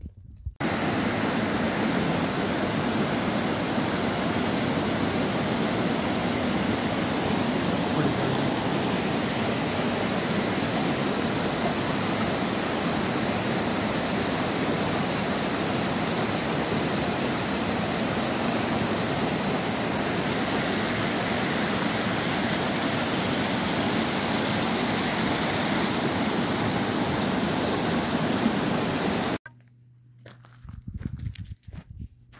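Small mountain stream cascading over rocks: a steady rush of water that starts abruptly just after the start and cuts off abruptly near the end.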